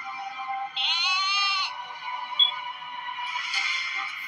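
Steady background music with a single goat bleat about a second in, lasting under a second.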